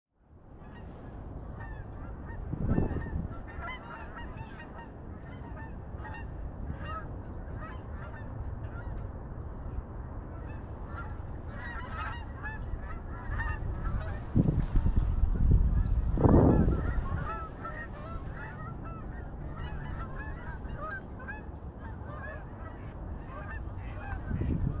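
Many geese honking throughout, thickest about halfway in, over a steady low rush of wind on the microphone. Loud low gusts buffet the microphone about three seconds in and again from about fourteen to seventeen seconds in.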